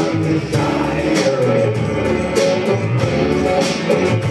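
Live worship band playing a song with voices singing: electric guitar, drum kit and keyboard under sung lines. The drums keep a steady beat, with a cymbal stroke about every second and a bit.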